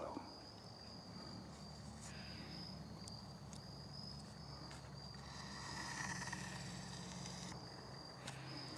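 Crickets trilling steadily in a single high-pitched tone, faint, with a few sharp ticks scattered through it.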